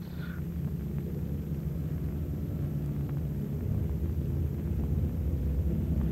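Steady low drone of a B-50 bomber's four radial piston engines overhead on its bombing run, growing slightly louder.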